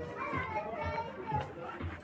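High-pitched voices chattering and calling, with music underneath.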